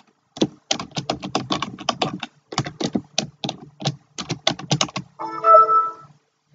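Typing on a computer keyboard: a quick, uneven run of keystroke clicks. Near the end a short chiming tone, louder than the typing, sounds for about a second.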